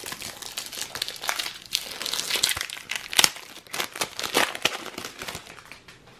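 Foil wrapper of a trading-card booster pack crinkling and crackling as it is torn open and the cards are pulled out, in quick irregular crackles that ease off near the end.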